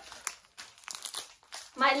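Plastic packet crinkling as it is lifted out of a cardboard box, a series of short, sharp rustles, with a voice starting near the end.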